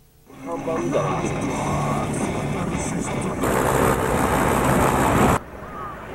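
Voices over a loud rushing noise, which swells about three seconds in and cuts off abruptly near the end.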